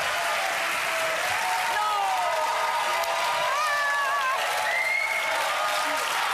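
Studio audience applauding steadily, with a few short shouts over it.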